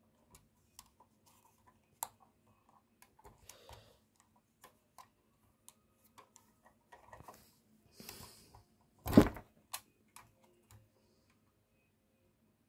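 Small clicks, taps and rubbing from a Siku Mercedes-Benz Zetros toy fire engine being handled, its plastic and die-cast parts worked by hand, with one louder knock about nine seconds in.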